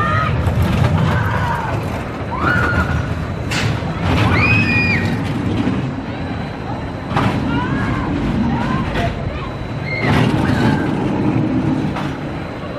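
Gerstlauer spinning roller coaster car rumbling along its steel track, the rumble swelling and fading as it moves through the layout. Short shouts and shrieks come over it several times, one loud high shriek about four seconds in.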